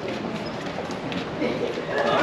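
Indistinct voices of people nearby over a steady background noise.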